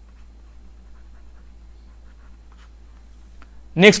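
Faint scratching and light taps of a stylus writing on a tablet, scattered and irregular, over a steady low electrical hum.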